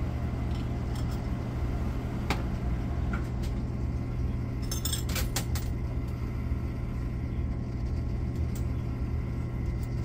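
Quarters dropped one after another into a coin pusher arcade machine, clinking against metal and other coins in scattered clinks, with a quick cluster about five seconds in, over a steady low hum.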